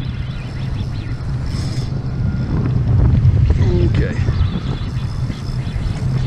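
Wind buffeting the camera microphone: a steady low rumble, with a single word spoken near the end.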